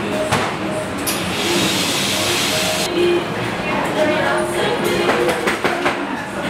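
Café background: voices talking and faint music, with a sharp hiss starting about a second in that lasts nearly two seconds and cuts off suddenly.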